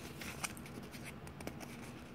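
Faint rustling and a few light clicks of hands rummaging for and handling a skein of yarn, over a faint steady hum.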